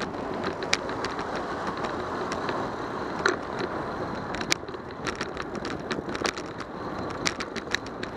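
A bicycle rolling over a concrete sidewalk, recorded from a bike-mounted camera: steady tyre and road noise with frequent sharp clicks and rattles, which come thicker in the last few seconds.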